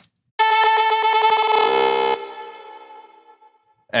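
Granular-synthesis vocal effect from a Reaktor ensemble: a frozen sung note chopped into rapid grains, giving a buzzy, stuttering tone. It cuts off just after two seconds in and leaves a fading tail.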